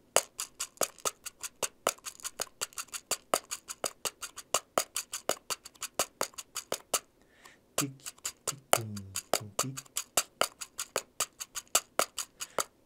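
A Jacarandaz pocket cajón, a palm-sized hardwood box drum held in the hands, played with the fingers in a samba rhythm. It gives a quick, even run of sharp wooden taps, about five to six a second, mixing deeper bass strokes with higher strokes for the samba's closed-and-open swing. It stops briefly a little past the middle.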